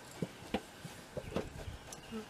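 Footsteps on wet stone steps: about five short, irregular taps and scuffs of shoes climbing.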